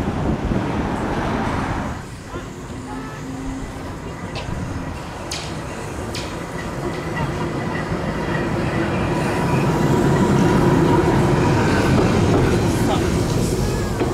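Illuminated Blackpool tram running along the track close by, its rolling rumble growing louder and loudest a couple of seconds before the end.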